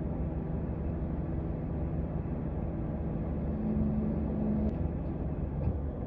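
Parked car's engine idling, a steady low rumble heard from inside the cabin.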